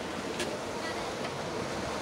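Steady wash of ocean surf and wind, with a brief click about half a second in.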